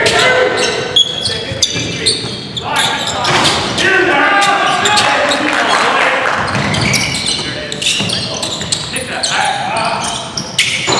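A basketball being dribbled and bouncing on a hardwood gym floor, with repeated sharp impacts, mixed with players' voices calling out.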